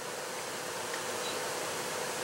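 Steady low hiss with a faint, even hum underneath; no distinct knocks or clicks stand out.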